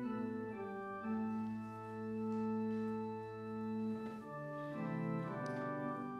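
Church organ playing a hymn in slow, sustained chords that change every second or so.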